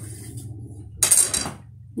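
A short clatter and scrape of wood about a second in, as the stick and flat wooden sword of a Mapuche loom are handled against the frame and warp.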